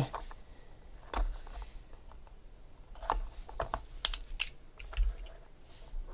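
Irregular sharp clicks, taps and scrapes, about eight in six seconds, as a utility knife slits open a cardboard trading-card box and the box is handled.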